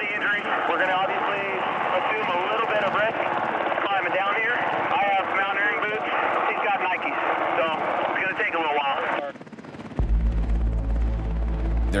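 Coast Guard MH-60T Jayhawk helicopter running steadily, heard inside the cockpit with crew radio voices talking over it, too garbled to make out. The voices stop about nine seconds in, and a low steady hum starts at ten seconds.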